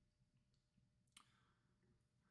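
Near silence, with one faint click just over a second in.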